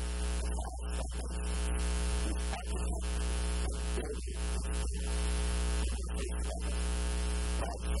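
Loud, steady electrical mains hum and buzz on the recording, with a man's reading voice broken up and partly buried beneath it.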